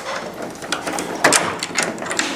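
A run of clicks and rattles from a wooden front door's metal handle and lock being worked to open it, with the loudest clack a little past the middle.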